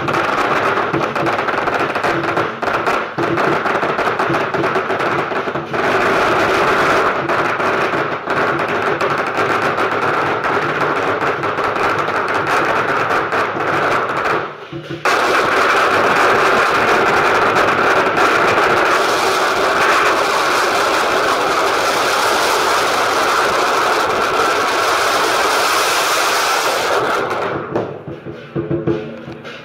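Long strings of firecrackers going off in rapid, continuous crackling, with a brief break about halfway through, then a second run that stops suddenly at the end.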